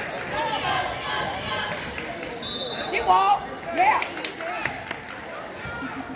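Basketball being dribbled on a hardwood gym floor amid spectators' voices, with louder shouts about three and four seconds in. A short, steady whistle tone sounds about two and a half seconds in.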